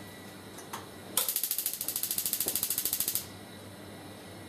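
A rapid, even train of sharp mechanical clicks, like a ratchet, from the FlexiBurn flammability tester while the burner's distance to the fabric is being set. It starts about a second in and stops sharply after about two seconds, after a couple of faint single clicks.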